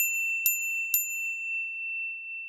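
A bright, high bell-like ding struck three times about half a second apart, each on the same clear note, the last left to ring and fade. It is an on-screen sound effect, one ding for each picture popping up.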